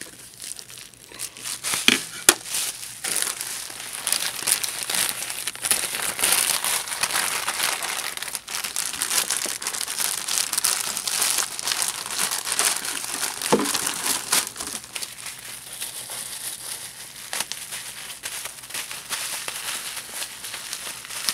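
Packaging crinkling and rustling continuously as the pieces of a boxed figure are unwrapped by hand, with a few sharper clicks about two seconds in.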